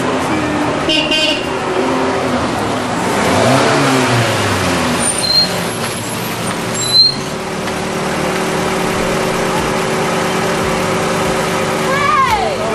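Road vehicle noise with background voices, swelling around four seconds in, and a sharp knock about seven seconds in.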